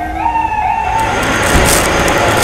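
An emergency vehicle's siren wailing, its pitch sagging slowly and then rising again before it stops about a second in. A steady rushing noise takes over for the rest.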